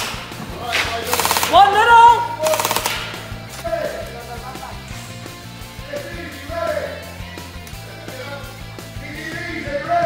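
Gel blaster firing two short full-auto bursts of rapid clicks in the first three seconds. Background music with singing runs underneath and is all that remains after the bursts.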